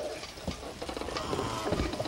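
Steady hiss of storm rain under the scene, with the rustle of bedclothes as Big Bird's large feathered costume clambers onto a bed, and a soft low thump near the end.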